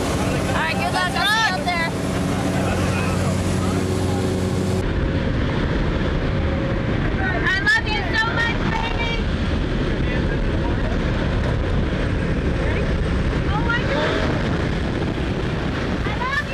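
A jump plane's engine drones steadily, with a shout over it. About five seconds in, the engine tone cuts off and a loud, steady rush of freefall wind on the microphone takes over, with occasional yells over the wind.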